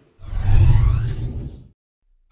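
A whoosh transition sound effect with a deep low rumble: it swells in quickly just after the start, peaks about half a second in, and fades away by about a second and a half.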